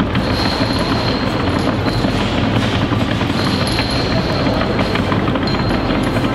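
A steady, rapid drumroll-like clatter held without a break: a suspense roll before a winner is named.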